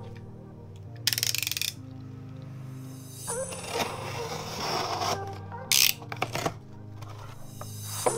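A utility knife's blade slitting packing tape along a cardboard box's seam, a long scratchy stretch of cutting in the middle, with a short rasping burst about a second in and a sharp rip near six seconds as the flaps come open. Background music with held notes plays under it throughout.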